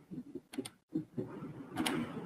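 Computer mouse clicking: a quick pair of clicks about half a second in and another click near the end, over faint low room noise.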